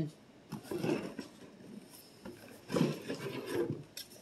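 Quiet handling sounds of a cardboard box as a plastic bubble machine is lifted out, with soft low murmuring about a second in and again near three seconds.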